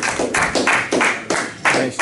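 Applause: hands clapping at a steady pace of about three claps a second.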